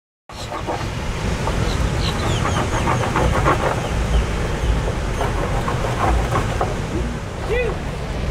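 Wind rumbling on the microphone over outdoor beach ambience, with indistinct voices through it; it starts abruptly just after the opening.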